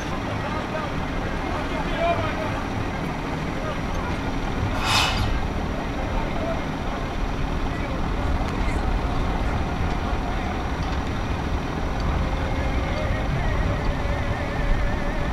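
Heavy diesel machinery running steadily with a low rumble, and a brief sharp hiss about five seconds in.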